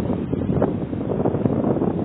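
Strong sea wind buffeting the microphone: a steady, loud low rumble.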